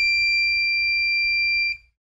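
One long, steady, high-pitched electronic beep that cuts off abruptly near the end.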